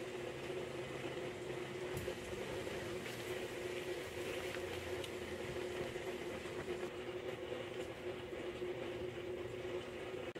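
A steady mechanical hum, with one faint click about two seconds in.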